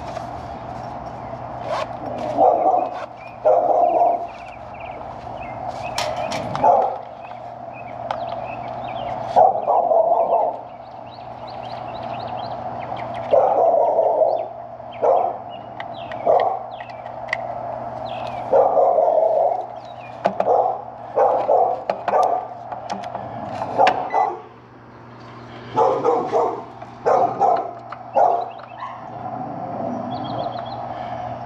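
A dog barking over and over at irregular intervals, short loud barks, some in quick runs of two or three, over a steady low hum.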